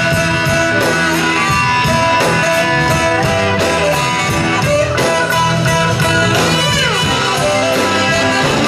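Live blues-rock band playing an instrumental break without vocals, electric guitar prominent over bass and drums. About six and a half seconds in, one note slides steeply down in pitch.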